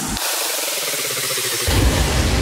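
Hardstyle track in a transition: the bass drops out and a wash of synthesized noise fills the mids and highs, then the low bass and kick come back in near the end.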